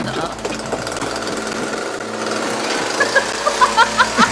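A chainsaw running steadily, with a voice over it in the last second.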